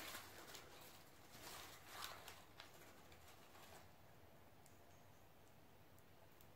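Near silence, with a few faint soft rustles and ticks in the first few seconds from dried pressed herbs and flowers being picked up and handled.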